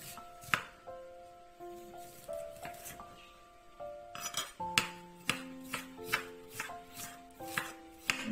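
Chef's knife cutting fresh ginger into thin strips on a marble cutting board: sharp knocks of the blade on the stone, a few scattered strokes at first, then a more regular run of a few strokes a second from about halfway. Soft background music with held notes plays underneath.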